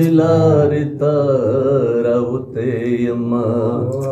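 A man chanting Pashto poetry unaccompanied in a slow sung melody, holding long wavering notes, with two short pauses, about a second in and again midway.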